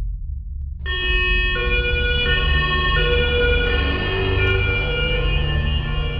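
Police car siren with a low engine rumble under it. The siren starts about a second in and switches back and forth between its pitches in steady steps, as a European two-tone police siren does.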